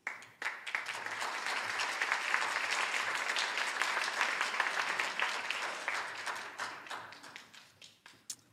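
Audience applauding: the clapping starts abruptly, holds steady, then thins out and fades over the last couple of seconds.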